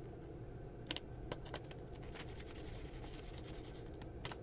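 Hands handling paper pieces and a stencil on a craft mat: faint, scattered taps, rustles and scratches, with a sharper click about a second in.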